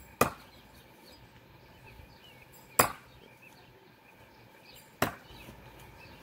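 Three Cold Steel Sure Strike heavy steel throwing stars striking a log-round target one after another, a sharp thunk each about two and a half seconds apart as each star sticks in the wood.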